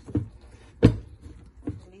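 Plastic clicks and knocks of a blender pitcher's lid being unlatched and lifted off. The loudest click comes a little under a second in, with lighter ones before and after it.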